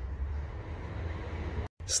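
A steady low rumble with a faint hiss over it, starting and cutting off suddenly.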